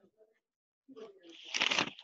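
A brief, indistinct voice over a video-call microphone about a second in, followed near the end by a loud rustling crackle of microphone noise.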